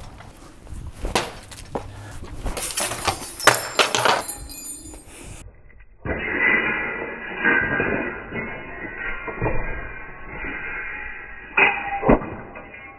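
A thrown ball hitting a cabinet door hung from metal hinge hooks, with a run of knocks and rattles. After a cut the sound turns duller, and near the end there is a loud clatter as the door comes off the hooks.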